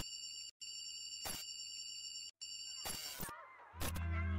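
Opening bars of an electronic pop song: sparse, high, steady synth tones broken by sharp clicks and two brief cut-outs. A fuller beat with deep bass comes in near the end.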